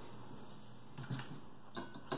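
Quiet room tone with a faint click near the end.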